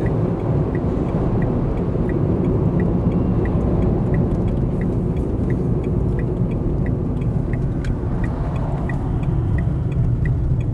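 Steady road and engine rumble of a car heard from inside the cabin while driving. Over it, the turn indicator ticks evenly, about twice a second, as the car turns off the highway.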